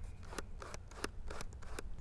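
Plastic zoom ring of a Sony FE 28-60mm F4-5.6 kit lens being twisted back and forth by hand: a quiet run of small scratchy clicks and rubbing from the all-plastic barrel, the sound of its cheap-feeling build.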